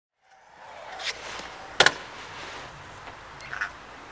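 Stunt scooter on skatepark concrete: a steady rolling hiss fades in, with a sharp double clack just under two seconds in and a few softer knocks shortly before the end.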